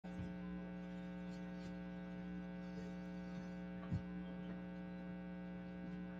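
Steady electrical mains hum in the audio line, a low buzz made of a stack of even tones, with one faint knock about four seconds in.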